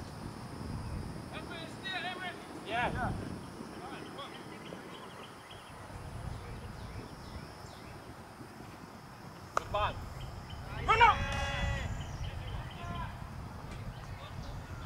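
Players' voices calling out across an open cricket field: short shouts a couple of seconds in, then one loud, drawn-out shout about eleven seconds in. A single sharp crack comes just before that shout.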